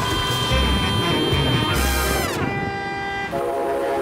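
A train's multi-tone air horn sounding a sustained chord that drops in pitch about two seconds in as it passes, then holds at the lower pitch, over a low rumble.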